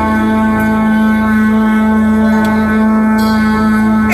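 Live band music played loud through a PA: one long chord held steady without change.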